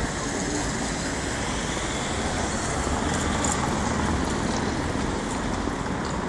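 Steady city street noise of road traffic passing, swelling slightly in the middle, with a few faint clicks.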